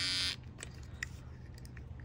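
Geemy cordless pet hair clipper running with a dense electric buzz that stops abruptly about a third of a second in. After that only a faint low hum and a few faint clicks remain.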